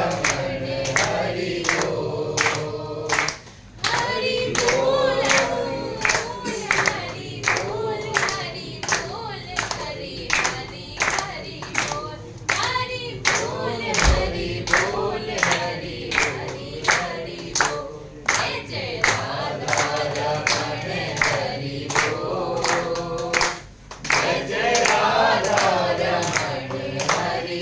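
Group singing of a devotional song, accompanied by steady rhythmic hand clapping, about three claps every two seconds. The singing breaks briefly about four seconds in and again near the end.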